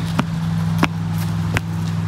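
Footsteps on a paved path, three steps at an even walking pace, over a steady low hum like a running engine.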